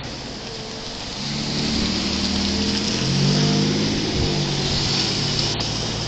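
A car driving past close by: its engine note and tyre hiss grow louder from about a second in and are loudest around the middle.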